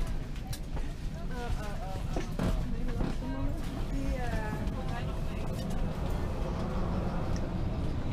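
Indistinct chatter of passengers in an airliner cabin while disembarking, over a steady low rumble, with a few light clicks and knocks.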